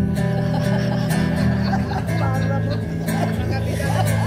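Acoustic guitar playing sustained chords as a quiet accompaniment, with a voice heard over it.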